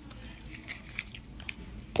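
Faint scattered clicks and rustles of cardboard and paper packaging being handled, as the iPhone 11 box's paper document pack is lifted out and set aside.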